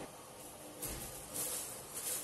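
Faint rustling of a plastic sheet and a cloth towel being tucked over a bowl of dough, in a few soft brushes, over a low steady hum.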